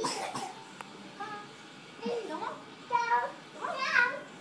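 Young children's voices: a short noisy burst at the start, then a few brief wordless calls whose pitch bends up and down, the loudest near the end.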